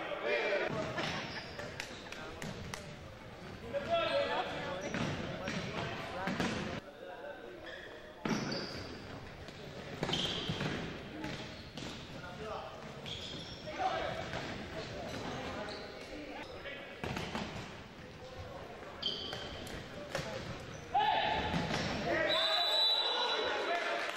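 Futsal ball being kicked and bouncing on a hardwood gym floor in irregular sharp knocks, with players' shouts, all echoing in a large gymnasium.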